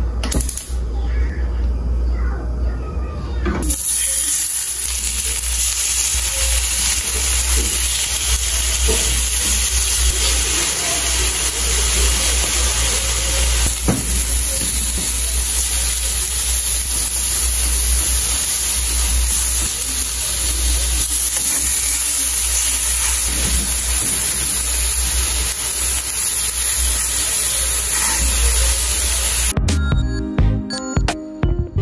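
Chicken fillets frying in a nonstick pan: a steady sizzle that sets in about four seconds in.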